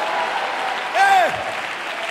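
Congregation applauding steadily, with a brief voice over the clapping about a second in.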